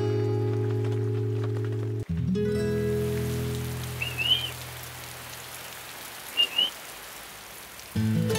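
Background music with slow held chords that fade out, giving way about two seconds in to steady rain falling. Two short high chirps come over the rain.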